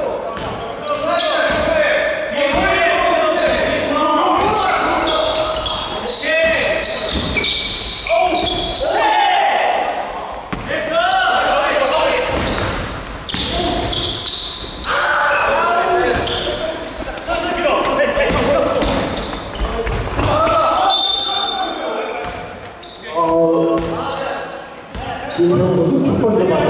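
A basketball being dribbled and bouncing on the hardwood floor of a gymnasium during a game.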